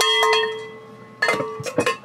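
Hand-held cowbell shaken rapidly, its clapper striking about ten times a second. The strikes stop about half a second in and the bell rings on, fading. A few sharp clunks follow near the end.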